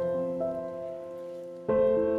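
Background piano music: held notes fading away, then new notes struck near the end.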